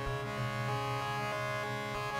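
Electronic music played on Korg synthesizers: short stepping notes in a quick repeating pattern over a held low bass note.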